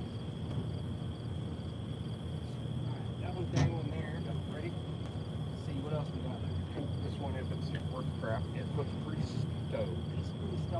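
Insects trilling in a steady high tone with a fast, even chirp, over a steady low rumble. Quiet, indistinct voices are heard from about three seconds in, and there is one short click.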